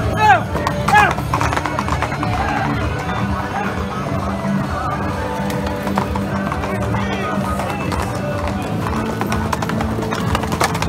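Horses' hooves on a sand-covered street as riders pass, mixed with music and crowd voices. Two short, loud rising-and-falling cries come in the first second.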